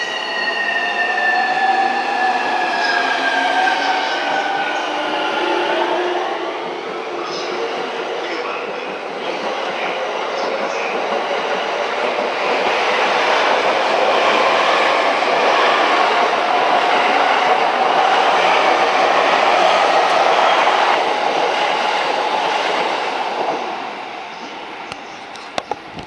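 A JR East E231 series electric train pulling away. Over the first few seconds the traction inverter's whining tones glide in pitch, some falling and some rising, as it accelerates. Wheel and rail running noise then builds as the cars go by and falls away near the end as the last car clears.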